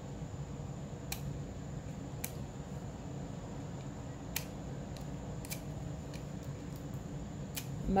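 Scissors snipping at tape: about five sharp clicks, spaced a second or two apart, over a steady low hum.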